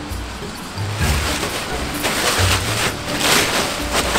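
Plastic tarp rustling and crinkling as it is handled and gathered up by hand, louder in the second half, over background music with a steady beat.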